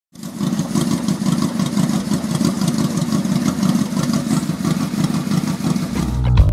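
Yamaha XVZ1300 Royal Star Venture's V4 engine idling steadily through its exhaust, cutting in sharply just after the start.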